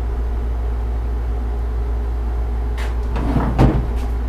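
Short metal clicks and clunks of a round brass bar being set into a steel bench vise and clamped, the loudest knock about three and a half seconds in, over a steady low hum.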